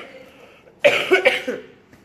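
A woman coughing, a short run of a few quick coughs about a second in.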